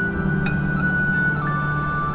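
Film background score: a high held melody note that steps down to a lower note about a second and a half in, over a steady low drone.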